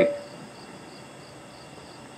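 Insects chirping outdoors in a steady, faint, high, even trill, heard in a pause between a man's sentences.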